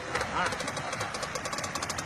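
Engine of a pickup truck that has gone off a bridge into a river, still running with a fast, even knocking, over the noise of rushing water. A voice speaks briefly about half a second in.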